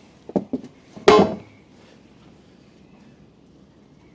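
A boat's rudder being set down and put aside: a few light knocks, then one louder, brief ringing clunk about a second in.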